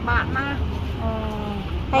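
An elderly woman speaking Khmer, over a low, steady rumble.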